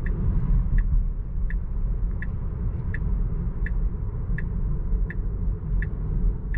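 Tesla Model 3's turn-signal ticking evenly, about three ticks every two seconds, over a steady low rumble of road and tyre noise inside the cabin: the car signalling for an upcoming right turn.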